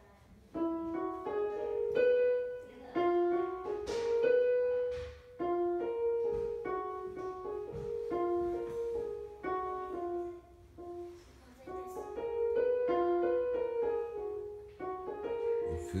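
Portable electronic keyboard with a piano voice playing a simple melody one note at a time, with short pauses between phrases about five and eleven seconds in.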